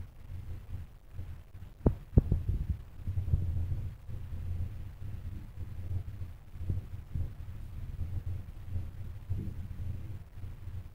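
Low, uneven rumble on the microphone, with a few sharp knocks about two seconds in, typical of a handheld phone being handled or wind on its microphone.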